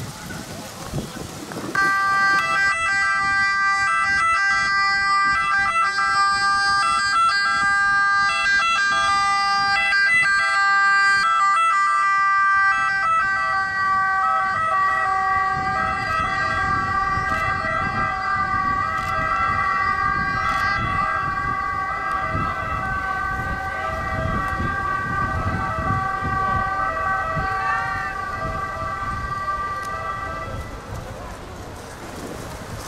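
Ambulance two-tone siren wailing steadily, switching back and forth between two pitches. It starts about two seconds in and keeps going as the ambulance drives off, easing slightly near the end.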